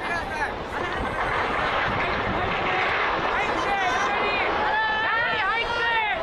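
A steady, loud rushing noise of the tsunami flood surging inland. From about halfway through, people's voices call out over it.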